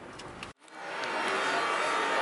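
Quiet car-cabin noise cut off abruptly about half a second in, then a steady hiss of room noise in a large hall fades in and holds.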